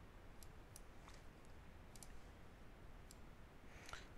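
Faint computer mouse clicks, about half a dozen at irregular intervals, over quiet room tone.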